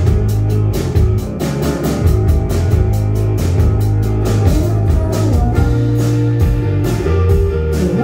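Live rock band playing an instrumental passage: guitar and drum kit over a heavy low end, with a steady beat of drum and cymbal hits.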